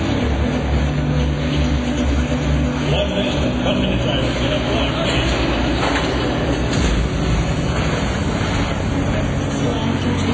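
Small combat robots' electric drive motors whirring, with a few short rising whines as they speed up, under the chatter of the crowd around the arena.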